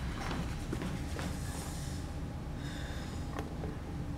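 A few faint footsteps and small knocks on a stage floor over a steady low hum of room noise, with a short breathy sound about three seconds in.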